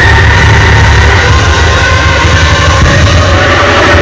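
Live rock band playing, loud and dense throughout, with a heavy bass and no breaks.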